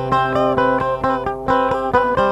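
Background music: a plucked string instrument playing quick notes over a steady held drone.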